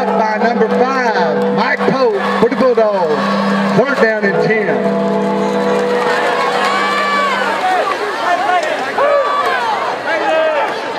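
Football stadium crowd: many voices shouting and calling from the stands, over a band's held chord that stops about seven and a half seconds in.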